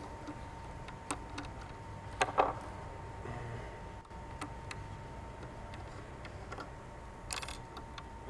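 Small, scattered clicks and ticks of a hook being handled and set in a metal fly-tying vise, over a faint steady tone.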